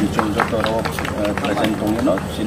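Speech: a man talking to the camera, with no other sound standing out.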